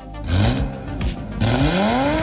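BMW 635 CSi's naturally aspirated 3.5-litre straight-six revved twice through its rebuilt 63 mm exhaust: a short rising blip, then a longer rising rev near the end.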